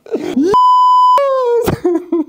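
A censor bleep: a steady high-pitched tone of about two-thirds of a second, starting about half a second in and laid over speech. After it comes a drawn-out falling groan-like sound.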